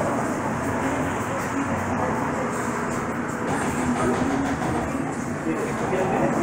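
Restaurant interior ambience: indistinct voices over a steady rumbling background noise.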